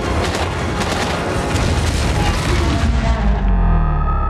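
Action-film soundtrack: dramatic score mixed with repeated land-mine explosion booms and a heavy low rumble. About three and a half seconds in, the high end drops away, leaving held tones, a falling tone and the deep rumble.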